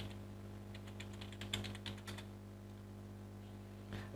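Typing on a computer keyboard: a quick run of keystrokes for about the first two seconds, then it stops, with a steady low hum underneath throughout.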